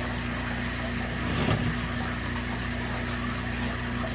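Steady hum and rush of water as a Python gravel vacuum siphons water and gravel up its clear tube from an aquarium.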